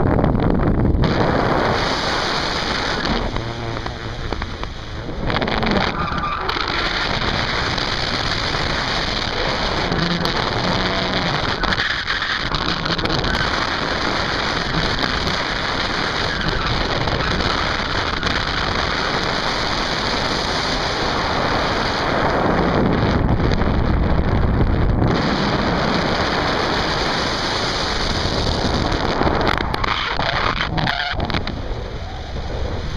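Wind rushing hard over the camera's microphone in flight, a loud, steady, rough roar that eases briefly a few seconds in.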